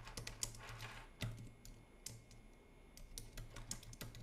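Typing on a computer keyboard: a quick run of keystrokes in the first second or so, then a few scattered keystrokes, faint.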